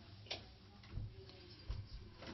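Quiet room tone with a few faint clicks and two soft, low thumps, one about a second in and one near the end.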